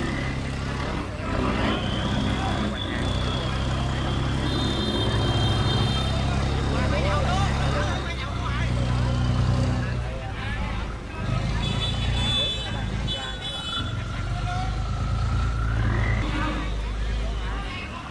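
Boat engine running steadily as a pushboat drives a loaded rice barge through a sluice, with distant voices calling out over it.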